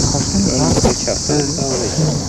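Steady, high-pitched drone of insects, with people talking indistinctly underneath.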